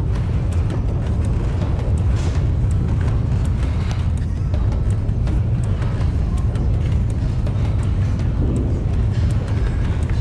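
A deep, steady rumble with a noisy hiss, the staged 'aftershock' effect of a shaking ledge with dust blowing across it, mixed under dramatic background music.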